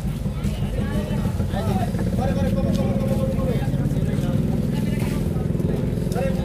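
Steady low drone of a running engine, with people talking in the background.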